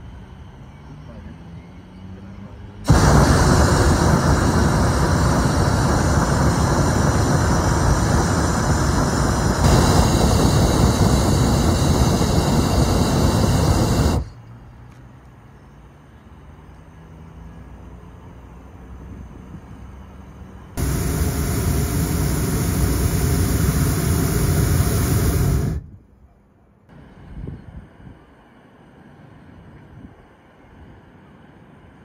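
Hot air balloon's propane burner firing in two long blasts, one of about eleven seconds and a shorter one of about five seconds, each starting and cutting off abruptly.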